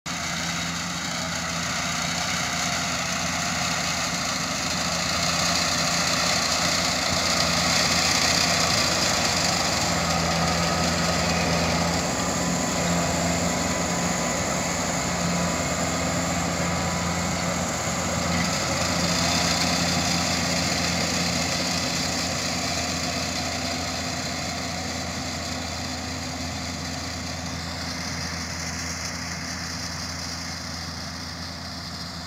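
Kubota KAR90 tracked rice combine harvester running under load as it cuts and threshes rice: a steady engine drone with a high mechanical whine from the threshing works. It grows louder as the machine passes close in the middle and fades near the end as it moves away.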